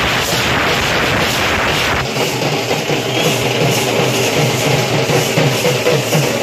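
Loud, distorted dance music with a crowd for about two seconds, then an abrupt change to music with a steady drum beat.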